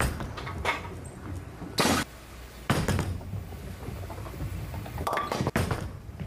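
Bowling ball rolling down a wooden lane with a low rumble, then a short, sharp crash of the ball hitting the pins about two seconds in.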